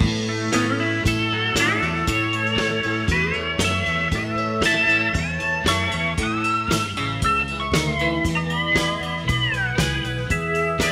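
Instrumental break of a live country-rock band: a steel-style guitar lead with gliding, bent notes over bass and a steady drum beat.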